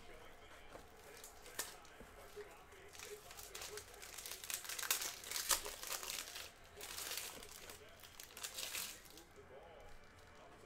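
Clear plastic shrink wrap being peeled and torn off a sealed trading card box and crinkled in the hands, with a steady run of crackling that is densest from about three to nine seconds in.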